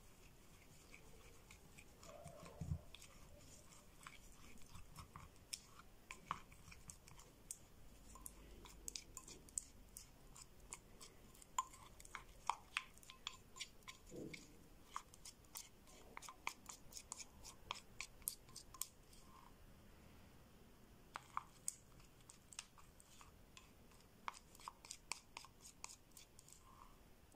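Faint, irregular clicking and scraping of a small plastic spoon against a ceramic bowl, stirring a thick creamy paste.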